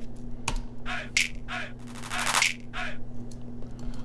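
A programmed clap roll played back in FL Studio: a run of sampled hand-clap hits with short tails, closing up into a denser, louder burst a little past halfway, their velocities ramped up by a drawn velocity curve.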